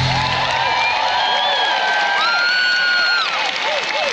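Large theatre audience cheering and applauding at a curtain call, with whoops and long shrill whistles about two to three seconds in. The show's loud music with heavy bass cuts off in the first half second.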